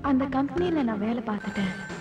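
A voice speaking, then a steady high electronic tone that starts about one and a half seconds in and holds.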